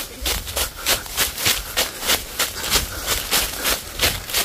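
Quick footsteps crunching through dry fallen leaves, about three steps a second, crackling with each stride.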